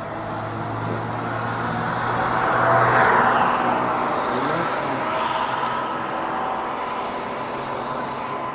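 Traffic noise of a car on the move, with a vehicle passing close by: the noise swells to a peak about three seconds in and then fades.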